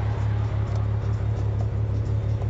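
Steady low drone of the Golf VR6 Turbo's narrow-angle V6 engine and road noise heard inside the car's cabin at speed.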